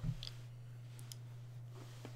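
Quiet room tone with a steady low electrical hum and a few faint, short clicks.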